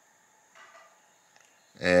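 Near quiet with a faint, brief rubbing of a soft plastic trailer being slid onto a chatterbait's hook about half a second in, and a couple of tiny clicks later; a man starts talking near the end.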